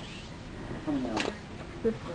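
A woman's brief voiced sound with a falling pitch about a second in, then the start of her speech near the end, over low room hiss.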